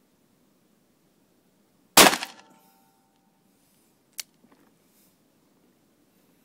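A single .357 Magnum revolver shot about two seconds in, its echo dying away in the reverberant indoor range. The revolver was freshly repaired and is being test-fired. A much quieter, sharp metallic click follows about two seconds later.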